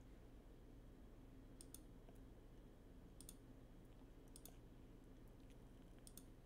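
Near silence, with a few faint computer mouse clicks, mostly in quick pairs, at about one and a half, three and four and a half seconds in.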